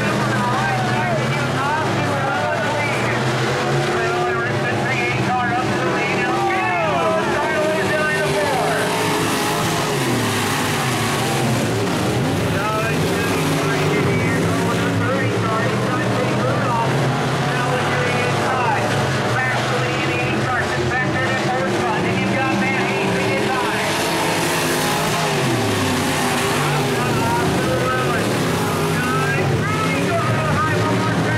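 A pack of IMCA sport modified dirt-track race cars with V8 engines running laps, the engines repeatedly rising and falling in pitch as the drivers get on and off the throttle through the turns.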